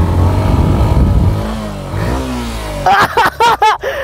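Yamaha motorcycle engine revving high while the bike is drifted on loose sand; the engine note falls and then climbs again around the middle.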